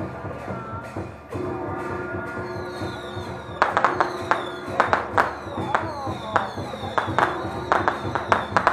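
Temple-procession music: a steady held instrumental tone, then, from about three and a half seconds in, a fast run of loud gong and cymbal strikes whose ringing slides down in pitch after each hit.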